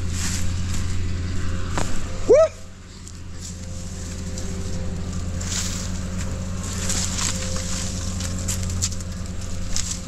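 A diesel machine idles steadily in the background while dry sticks and brush crackle underfoot. A short, sharply rising call cuts through about two seconds in.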